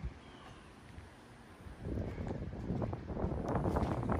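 Wind buffeting the phone's microphone: quiet at first, then gusting loudly from about two seconds in.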